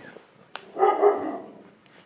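A dog barking loudly in a short burst of under a second, starting about half a second in.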